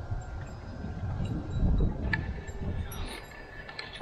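Wind buffeting the microphone in an uneven low rumble, with the faint lingering ringing of a wind chime; a single sharp click about two seconds in.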